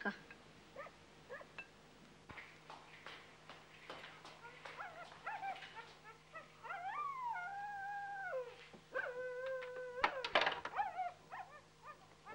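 A dog whining and howling behind a door: a few long held notes that glide and step down in pitch, from about seven to ten seconds in. Then come sharp clicks from a key and handle working the door lock.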